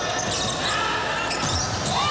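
Sounds of a volleyball rally in a large indoor arena: the ball is struck and shoes squeak on the hardwood court over a steady murmur of crowd noise.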